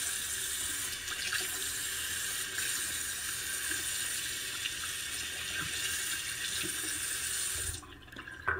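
A bathroom faucet runs in a steady stream into the sink, splashing over a lather bowl as it is rinsed out. The running water stops abruptly near the end as the tap is shut off.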